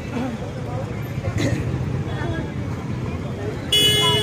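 Busy street-market background: traffic rumble and crowd chatter, with a vehicle horn honking loudly near the end.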